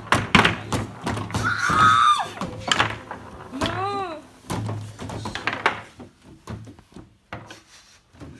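Wooden foosball table in play: rapid, irregular knocks and clacks of the ball and figures being struck as the rods are spun and jerked, thinning out over the last couple of seconds. Excited squeals and exclamations from the players come in between.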